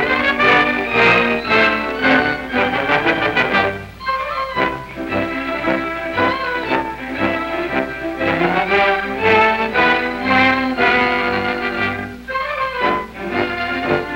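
Orchestral background music led by strings, playing a flowing melody of held notes, with brief lulls about four seconds in and again near the end.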